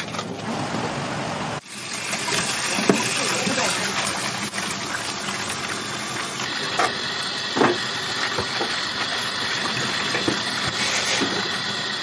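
Tap water running steadily onto a head of iceberg lettuce, with the wet leaves being handled and pulled apart under the stream; a few short crackles of handling stand out.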